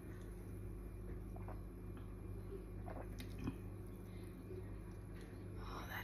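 Faint sipping and swallowing of a gin and tonic from a glass: a few small gulps and mouth clicks, one a little louder about three and a half seconds in, over a steady low hum.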